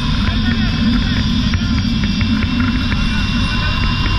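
Wind buffeting an action camera's microphone during a fast zip-line ride, a steady low rumble, with music and thin higher tones running underneath.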